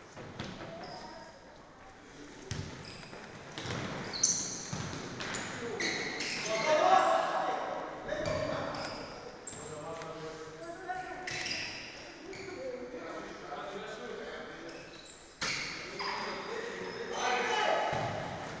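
Indoor futsal match: players' shouts and calls mixed with the ball being struck and bouncing on the wooden hall floor, all echoing in the large sports hall. There is a sharp impact about 15 seconds in.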